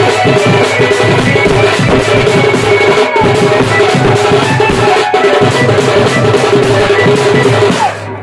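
Dhol, a double-headed barrel drum, beaten loudly with a cane stick and the bare hand in a fast, driving rhythm, with a steady high tone held above it.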